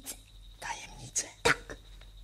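A voice whispering in short breathy syllables over a faint steady low hum, with a sharp click about one and a half seconds in.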